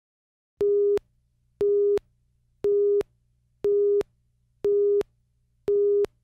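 Countdown leader beeps: six short, identical steady tones, one each second, as the slate counts down. A faint low hum sits between the beeps.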